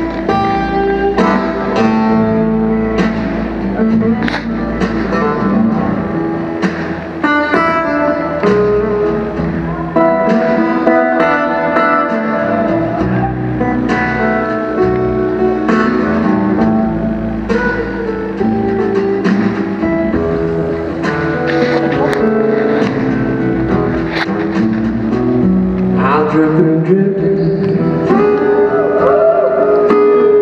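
Steel-string acoustic guitar played live in a blues style, picked notes and runs over chords with band backing. A man's voice comes in singing near the end.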